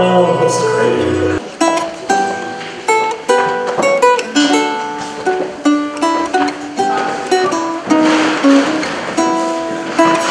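Early-music ensemble over a held low drone, which stops about a second and a half in. Then a Renaissance lute plays alone, single plucked notes and small chords ringing out one after another.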